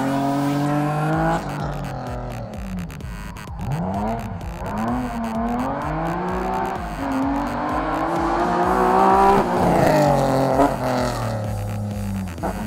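Race car engine revving hard and dropping off again and again as the BMW takes the corners of the course, with some tyre squeal. Background music with a steady beat runs underneath.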